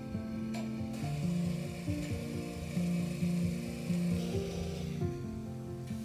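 A gritty mechanical grinding, rasping sound with many small irregular clicks, from about a second in until about five seconds, over acoustic guitar music.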